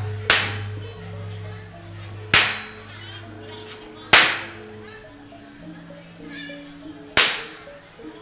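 Gamelan accompaniment with steady sustained low notes that change pitch, punctuated by four sharp cracks one to three seconds apart, each ringing out briefly.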